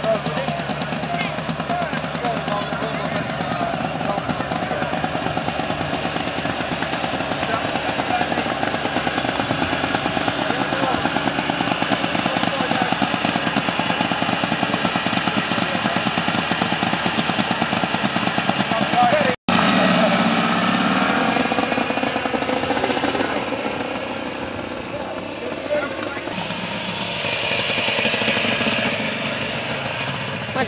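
Berkeley T60's 350cc two-stroke twin-cylinder engine idling with a rapid, even firing pulse. After a brief break about two-thirds through, it revs and the car pulls away, the sound dipping and then rising again near the end.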